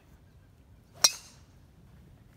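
A golf driver striking a ball off the tee: one sharp, ringing metallic crack about a second in that fades quickly. It is a clean, well-struck drive, called the best drive of the day and one that felt good.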